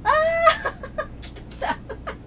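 A woman's high-pitched cry of surprise, rising and then held for about half a second, followed by short bursts of laughter.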